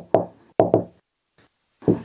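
A marker tip knocking and tapping against a whiteboard as a word is written. There are several sharp knocks in the first second, then a short lull, then another knock near the end.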